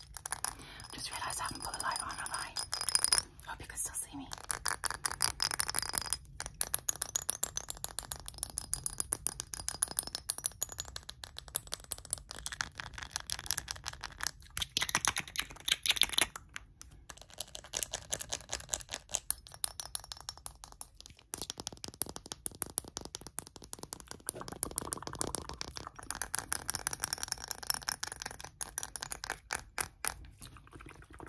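Fast, dense tapping and scratching of short fingernails on a glass perfume bottle and its cap, many taps a second, with a few brief pauses.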